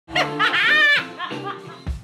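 A woman laughing loudly over music, her voice rising in pitch, for about the first second. The music carries on, and a deep drum hit lands near the end.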